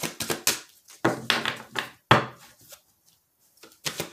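Tarot deck being shuffled by hand: a quick run of card clicks and flicks, loudest about two seconds in, stopping about three seconds in.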